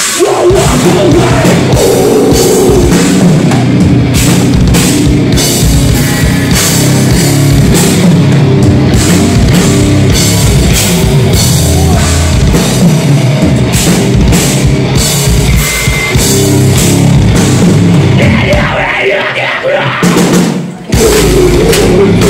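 Metalcore band playing live at full volume: heavy rock guitars and a pounding drum kit, with vocals. Near the end the band breaks off for a moment, then comes crashing back in.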